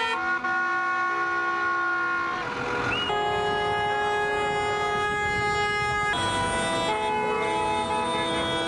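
Several lorry and car horns sounded together in long held blasts, making loud sustained chords that change pitch every two to three seconds.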